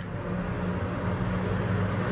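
A steady low motor hum that grows slightly louder toward the end.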